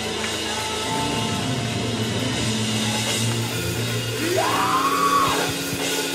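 Live worship band music: keyboards holding sustained chords over a steady bass line. About four seconds in, a note slides up and back down, and this is the loudest part.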